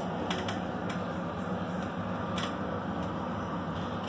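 A steady low hum with a few light clicks, four of them in the first two and a half seconds.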